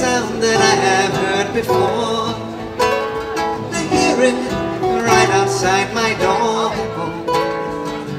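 Live acoustic music: two acoustic guitars played together, with a voice singing over them.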